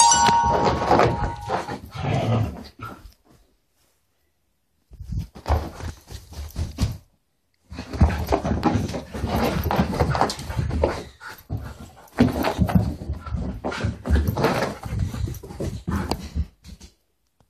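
A small dog playing, growling and scuffling close to the microphone against bedding. The sound comes in bursts and stops for about two seconds around three seconds in.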